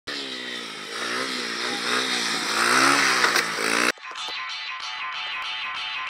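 Dirt bike engine revving, its pitch rising and falling and growing louder as it approaches. It cuts off abruptly about four seconds in, replaced by music with a steady beat.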